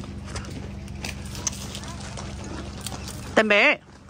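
Footsteps on a gravel path, with scattered small clicks over a steady low hum. Near the end a person's voice calls out briefly and loudly, its pitch wavering.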